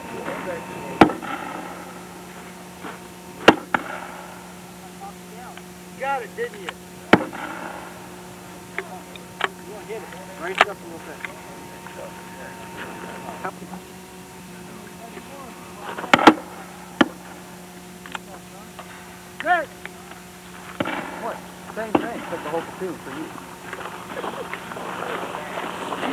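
Gunshots on a military firing range: sharp single reports every few seconds, the loudest about three seconds in and again about two-thirds of the way through, with faint voices between.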